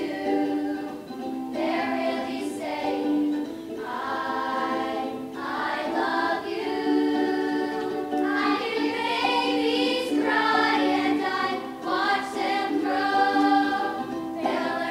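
A group of children singing a slow song together in unison, with held notes, accompanied by a ukulele.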